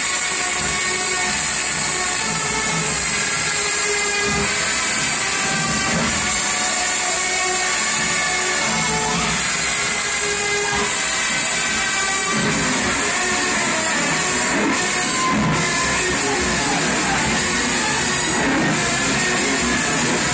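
Loud music played over a venue's speakers for a dance routine, with a steady high hiss over it.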